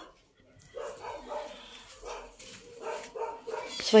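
Young puppies crying faintly in a series of short, soft cries, after a near-silent start.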